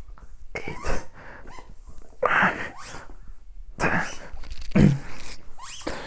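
A person straining through leg raises, breathing out in several short, forceful, sneeze-like bursts about a second apart, the strongest about halfway through.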